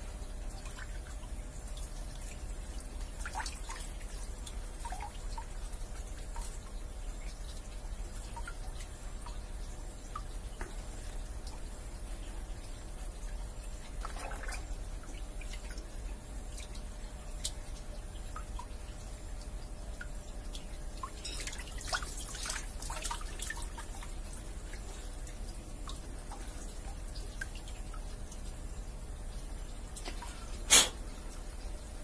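Scattered drips and small splashes of water from a plastic sieve basket and hands working in a shallow pond, with a denser run of sharper drips and splashes about two-thirds of the way through, over a steady low hum.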